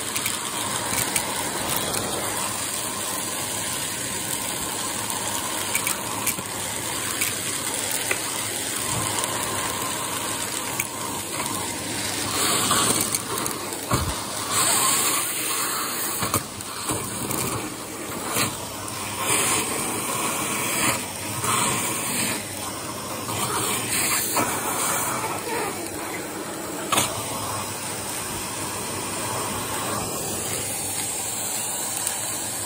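A Shark vacuum cleaner running, its hose nozzle sucking dust out through the collar of a Hetty vacuum's paper dust bag. The suction noise is steady, with its loudness rising and falling unevenly through the middle as the nozzle shifts against the bag opening.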